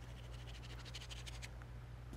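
Faint, fine pattering and scratching of coconut-fiber absorbent granules sprinkled by hand onto a liquid spill on a metal sheet pan, over a steady low hum.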